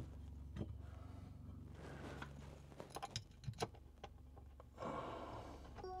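Faint scattered clicks and knocks of a closet pole being worked into its wall bracket, with a small cluster about three seconds in, over a low steady hum. A soft rustle near the end.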